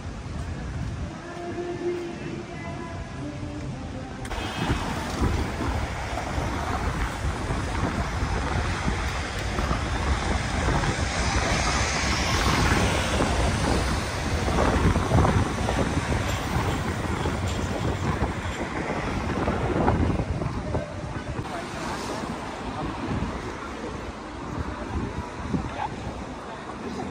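City street noise: road traffic and a tram passing close, loudest through the middle, with wind buffeting the microphone and faint voices of passers-by.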